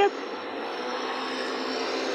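Street traffic with a motor scooter passing close by: a steady engine hum over road noise that swells slightly.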